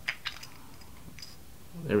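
A few light clicks and taps from the battery compartment of a mechanical box mod as its parts are handled, most of them in the first half second and one more about a second in.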